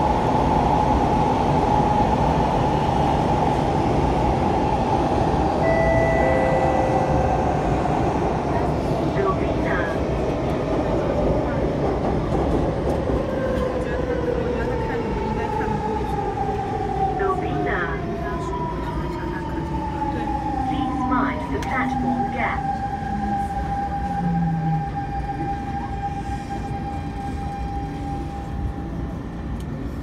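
Inside the cabin of a C651 metro train: a steady running rumble, with the electric traction whine falling in pitch over several seconds as the train brakes into a station, then settling to a steady tone near the end.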